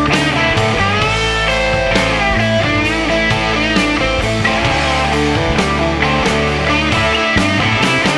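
Rock music in an instrumental passage with no singing: guitar lines with bending notes over sustained bass and steady drums.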